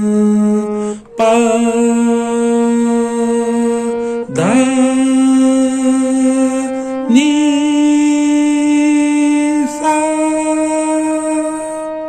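Harmonium playing the first alankar slowly, held notes climbing the scale one step at a time (Sa, Re, Ga, Ma, Pa), each held about three seconds. A voice sings along on each note.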